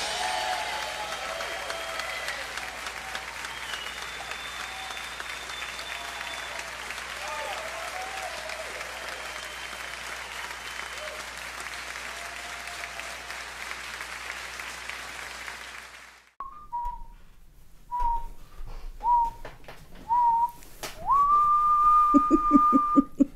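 Theatre audience applauding, with cheers and whistles, fading slowly after a song ends. The applause cuts off about three-quarters of the way through. A person then whistles a few short notes and one long held note that swoops up near the end.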